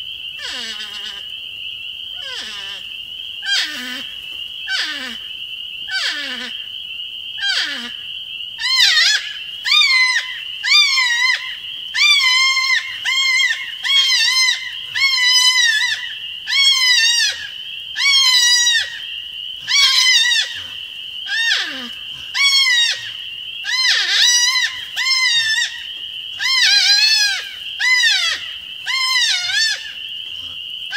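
Porcupine in a tree screaming in a long series of cries, which the uploader takes for the noise it makes while masturbating. At first the cries are falling calls about every second and a half; from about eight seconds in they are louder, quavering calls about one a second. A steady high whine runs underneath throughout.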